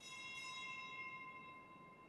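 A bell struck once, ringing with several clear high tones that start suddenly and fade away over the next two seconds.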